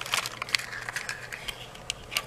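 Cardstock craft pieces and a small paper box being handled by hand: a scatter of light clicks and soft paper rustles.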